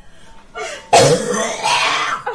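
A woman coughing and clearing her throat hard, choking on a mouthful of dry cinnamon, with a sudden loud rasping burst about a second in.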